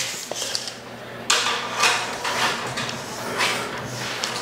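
Steel tape measure blade being pulled out, a scraping metallic rasp that starts suddenly about a second in and comes in several short pulls.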